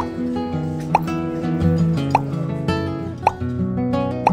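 Solo acoustic guitar music, plucked notes over a steady bass line, with a short sharp knock about once a second.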